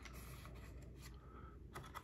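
Faint rustle of the paper pages of a small booklet being turned by hand inside a DVD case, with a few light ticks near the end.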